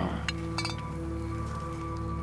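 Two glass bottles clinked together in a toast: a couple of quick clinks within the first second, over steady background music.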